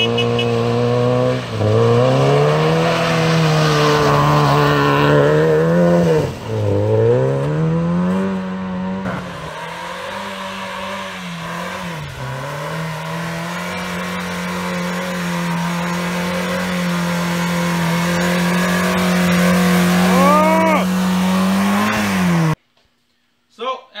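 First-generation Mazda Miata's four-cylinder engine revving up and dropping back several times, then held at high, steady revs for about ten seconds as the ski-fitted car drives through snow. A few short rising squeals come near the end, and the engine sound cuts off suddenly.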